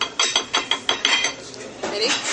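A quick run of about eight clinks and clicks, wooden chopsticks tapping against ceramic plates, over the first second or so, then quieter.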